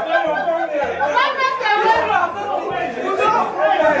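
Several people talking over one another in a room: lively group chatter.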